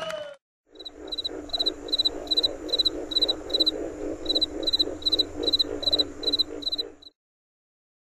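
The band's music trails off in the first half second. After a brief gap comes a night-time chorus of frogs and insects: a high chirp repeating about two to three times a second over a lower steady chorus, pausing briefly in the middle. It cuts off suddenly about seven seconds in.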